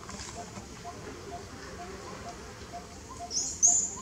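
Baby long-tailed macaque giving two short, high-pitched squeals near the end, the cry of a hungry infant denied food by its mother. Beneath it a faint, regular ticking about twice a second.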